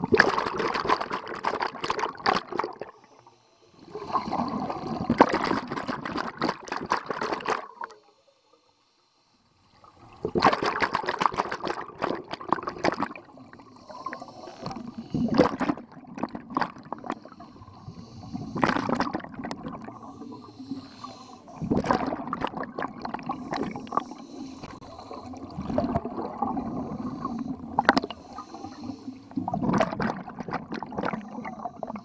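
Scuba regulator exhaust underwater: a diver's exhaled breath bubbling out in bursts of a few seconds each. There is a near-silent pause about eight seconds in, and after it the bursts come shorter and more irregular.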